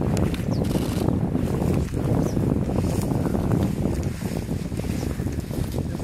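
Wind buffeting the camera microphone: a steady, loud low rumble that rises and falls.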